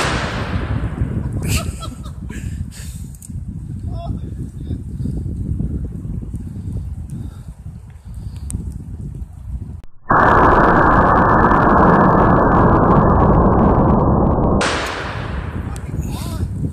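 Short-barrelled .500 S&W Magnum handgun firing 350-grain hollow points: the ringing tail of a shot fades at the start, and a second sharp shot with a ringing tail comes near the end. A loud steady rushing noise with its top cut off fills about four seconds before the second shot.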